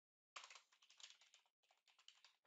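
Faint typing on a computer keyboard: a quick, uneven run of keystrokes starting about a third of a second in.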